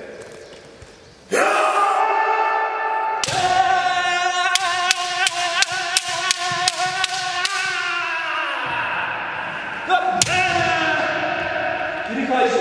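Kendo kirikaeshi drill: long, drawn-out kiai shouts while a bamboo shinai cracks on the opponent's helmet in a rapid run of about ten strikes, roughly three a second. A further shout and strike start near the end.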